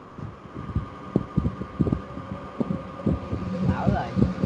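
Irregular soft thumps and clicks from a computer mouse and desk being handled, several a second. A steady thin electrical whine runs underneath.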